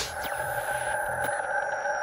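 Synthesized sound effect of an animated logo intro: a sustained electronic tone holding several steady pitches, with faint high tones gliding slowly downward and a few faint ticks.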